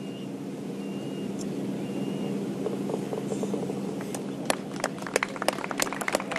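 Scattered hand claps from a small golf gallery, starting about four seconds in and growing denser, over a steady low outdoor murmur; a few faint short chirps sound early on.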